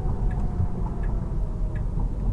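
Tesla Model 3's turn-signal indicator ticking at an even pace inside the cabin, over low road rumble, as the car signals a lane change.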